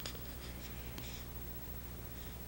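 Newborn baby sucking on a feeding bottle: faint, soft sucking and breathing noises about once a second, over a low steady hum.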